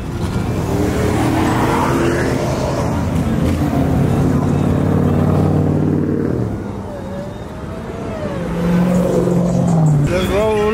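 Car engines running and revving on the street, loud and sustained for about the first six seconds, easing off, then building again near the end.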